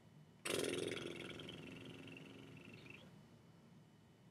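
A person's lip trill: a breath blown out through loosely closed lips so that they buzz, with no voice added yet. It starts suddenly about half a second in and fades away over about two and a half seconds as the breath runs out.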